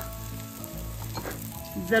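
Oats appe batter frying in oil in the hollows of an appe (paniyaram) pan, a steady sizzle.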